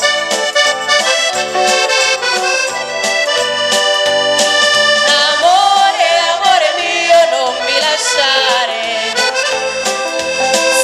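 Accordion playing the melody of a foxtrot with a live dance band, over a steady beat with tambourine.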